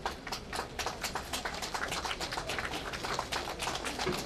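Small crowd applauding: many irregular, overlapping hand claps that begin suddenly and carry on steadily.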